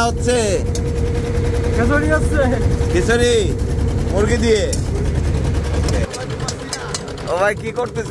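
Boat engine running steadily with a low rumble, with short bits of voices over it; the low rumble drops away about six seconds in.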